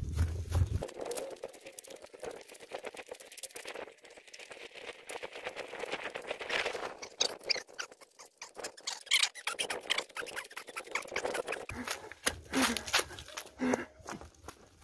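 Footsteps of a person running over dry ground and fallen leaves, a quick, irregular series of crunching steps, with the runner's hard breathing.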